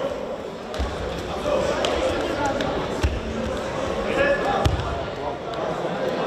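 Dull thumps on judo mats, three of them: about a second in, at about three seconds and just before five seconds. Under them runs the murmur of voices echoing in a large sports hall.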